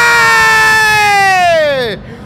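A male football commentator's long, loud, drawn-out shout, held at a high pitch, then falling and trailing off near the end. It is an excited cry over a shot that narrowly fails to become a goal.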